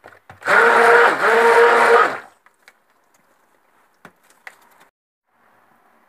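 Handheld stick blender running for about two seconds in thick cold-process soap batter that has reached light trace, then switched off. A motor whine with a slight dip midway.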